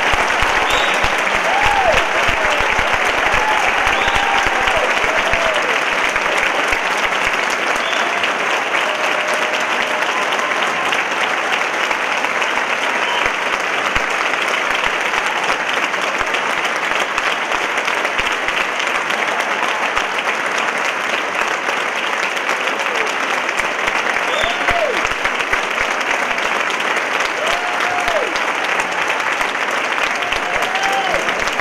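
Large audience applauding steadily and at length in a concert hall, with a few voices calling out now and then over the clapping.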